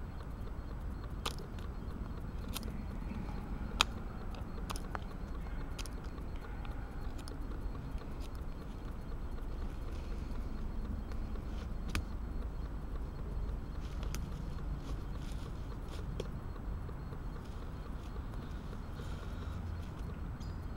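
A person moving about on leaf-covered forest ground: scattered rustling steps and short sharp clicks, one louder click about four seconds in, over a steady low rumble.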